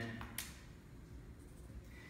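Quiet room tone, with one brief sharp scratch-like noise about half a second in.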